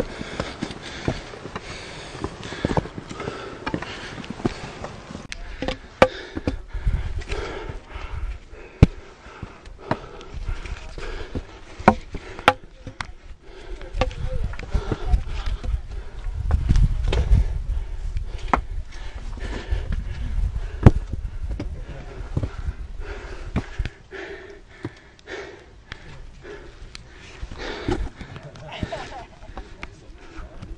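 Hikers climbing stone steps: scattered sharp clicks of trekking-pole tips striking stone over footsteps and scuffing. A stretch of low rumble from wind or handling on the microphone comes a little past the middle, and faint, indistinct voices are heard.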